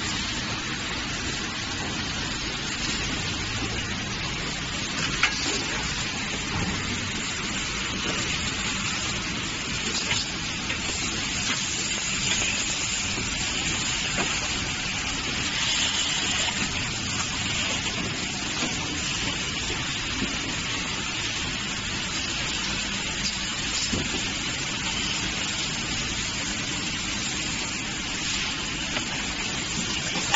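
Automatic carton packaging machinery running with a steady hiss-like mechanical noise, broken by a few sharp clicks from its mechanisms.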